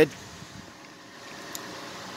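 Faint, steady background noise with no distinct event, and one small click about one and a half seconds in.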